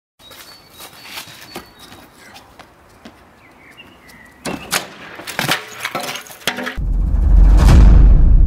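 Sharp knocks and clatters as a person jumps onto a wooden log frame, after a few seconds of faint outdoor background with small ticks. About seven seconds in, a loud deep boom swells up: a title sting.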